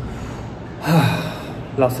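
A man takes one short, audible breath about a second in, then starts to speak.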